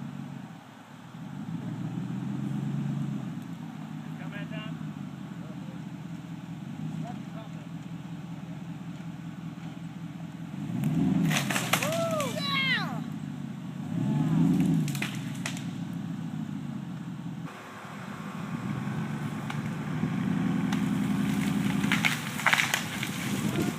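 Chevy Silverado pickup's engine running under load and surging in several bursts of revs as it drags a fallen tree across grass, with a few sharp cracks from the branches around the middle.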